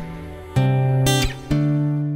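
Background music: strummed acoustic guitar, with three chords struck in turn, one about every half second to a second.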